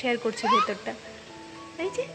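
A voice at the start, then a baby's short rising squeal about half a second in, followed by faint background music with held notes.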